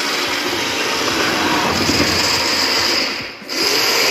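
Small electric motor and plastic gears of a battery-powered toy vehicle whirring steadily as the toys drive. The whirr drops out briefly about three seconds in, then picks up again with a thin high whine.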